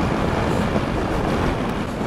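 Steady rush of a motorcycle riding along, engine and wind noise blended into an even roar without a clear pitch, picked up by a clip-on external microphone.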